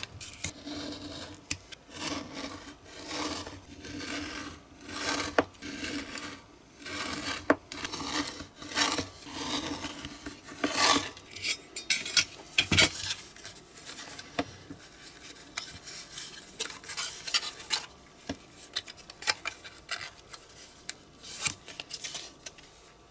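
Card stock being cut with a snap-off craft knife and handled on a cutting mat. There are repeated scraping strokes about once a second for the first half and a knock past the middle, then softer rustling and rubbing as the card is folded.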